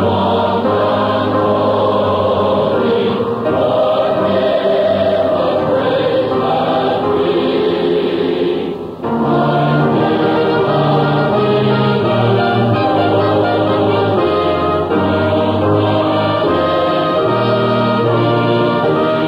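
Adult church choir singing sustained chords, with a brief dip in the sound about nine seconds in.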